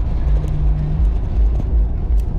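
Low, steady rumble of engine and road noise heard inside the cab of a Jeep Cherokee XJ driving on a snowy highway, with a faint hum over it for about the first second.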